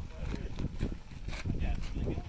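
Indistinct, muffled voices talking over a steady low rumble outdoors, with a few short sharp knocks.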